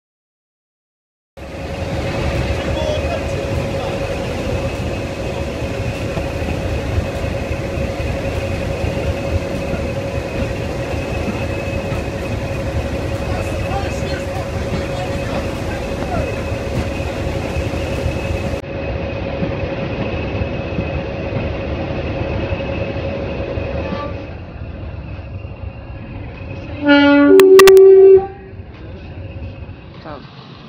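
Diesel locomotive D182, a BR Class 46 'Peak', running steadily with a high whine over the engine. Near the end a train horn sounds loudly in two tones, a lower note then a higher one.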